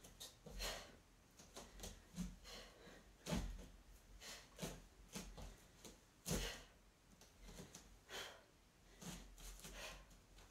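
Faint, irregular short swishes and soft thuds of a person practising front snap and side kicks barefoot on foam mats, the loudest about three and six seconds in.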